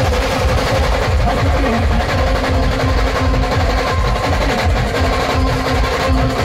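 Loud live band music played through a truck-mounted speaker stack: a fast beat of heavy bass drum hits and hand-played drums under a sustained melody line.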